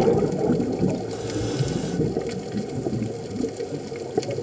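Scuba diver's exhaled bubbles underwater over a steady underwater noise. A burst of bubbling starts about a second in and lasts about a second.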